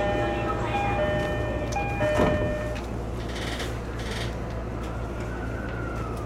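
E231-series electric commuter train running along the track, heard as a steady low hum and rumble. A short electronic chime of several notes sounds over the first few seconds. A single knock comes a little after two seconds in, and a faint whine rises and falls near the end.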